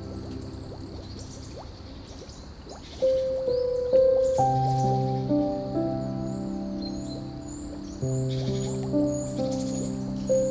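Slow, soft piano music: held notes fade away, then a new gentle phrase of notes begins about three seconds in. A bird chirps repeatedly behind it, most often in the second half.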